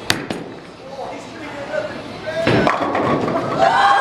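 A bowling ball lands on the wooden lane with a sharp thud just after release, rolls, and crashes into the pins about two and a half seconds in. Voices follow near the end.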